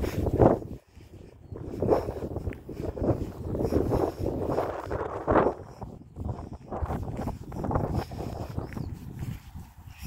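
Footsteps through long grass, with rustling at an uneven pace of about one pulse a second, and a short laugh trailing off at the start.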